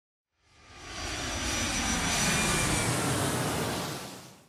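An airplane flying past: a broad engine rush with a faint high whine that swells up over about two seconds and then fades away.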